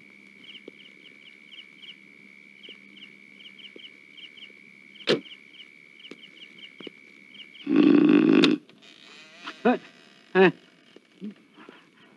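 Night insects chirping steadily, with a single sharp knock about five seconds in, like a car door shutting. Near eight seconds there is a loud, harsh cry lasting about a second, followed by a few short vocal sounds.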